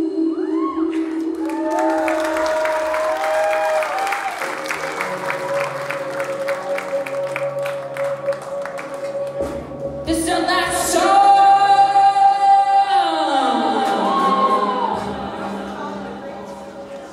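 Live rock band with a woman singing held, gliding notes over keyboard, guitar and drums. About ten seconds in, a loud sustained chord swells up, then the whole chord slides down in pitch and the sound fades near the end of the song.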